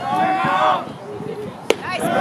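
Spectators' voices and chatter at a baseball game, with one sharp crack about three-quarters of the way through as the pitched ball reaches the plate.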